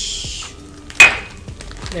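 A brief crinkle of a plastic bag of shredded cheese, then about a second in one sharp clink of a metal spoon striking a bowl, ringing briefly.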